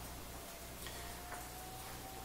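Quiet room tone with a faint steady whine and low hum, and a couple of light ticks about half a second apart.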